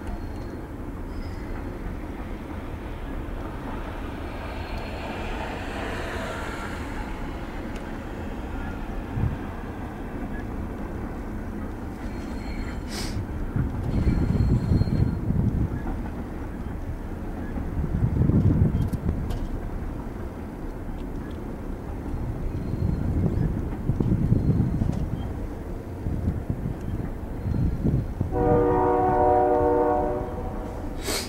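Double-stack container train's cars rolling past: a steady low rumble that swells louder several times. A train horn blows briefly near the end.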